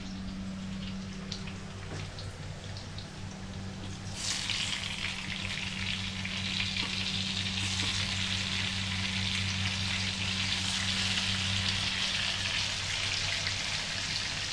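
Food sizzling as it fries in hot oil in a pan, a steady hiss that starts suddenly about four seconds in, over a steady low hum.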